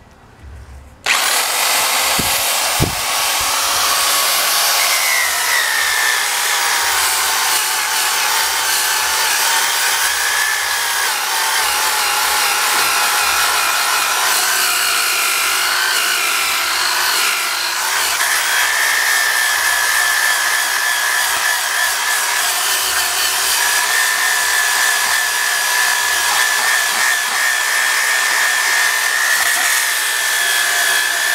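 Half-inch Ridgid corded drill starting about a second in and running at speed, spinning an Avanti Pro Quick Strip disc against the cooking surface of a new Lodge cast iron skillet to grind its rough, orange-peel finish smooth. A steady whine over a gritty scraping, its pitch wavering as the disc is pressed into the pan.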